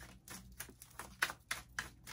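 A deck of tarot cards being shuffled and split by hand: a quick, uneven run of soft snaps and clicks as the cards slap against each other.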